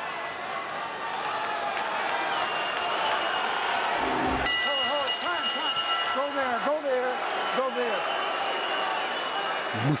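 A boxing ring bell is struck about halfway through, ringing out over a loud arena crowd. It signals the start of the ninth round.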